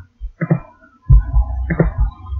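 A series of dull, low thumps and knocks close to the microphone, with a low hum setting in about a second in.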